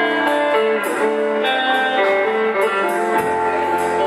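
Live blues-rock band playing: an electric guitar holds sustained, bending lead notes over bass and drums, with cymbal strokes at a steady beat. A deep bass note comes in about three seconds in.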